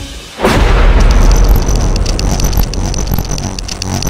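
Thunderclap sound effect: a sudden loud crack about half a second in, followed by a long deep rumble, over electronic music.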